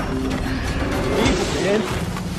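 Dark background score with a mechanical, ratchet-like clicking sound effect laid over it, opening with a sharp click.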